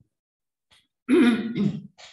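A man clearing his throat once, briefly, about a second in.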